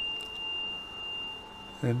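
A steady, high-pitched pure tone held without change, like a tuning fork or sine-wave tone, over faint hiss.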